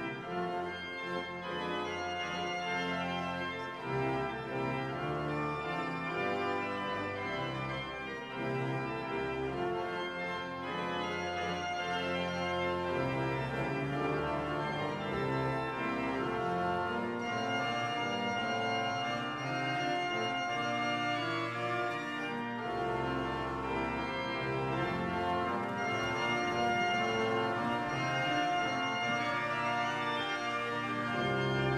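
Church organ playing the introduction to the congregation's entrance hymn: full held chords that change every second or two.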